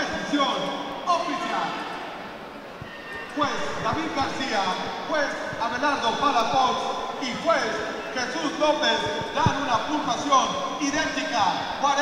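A man's voice over the arena's public-address system, announcing the judges' scorecards, with a short pause about two seconds in.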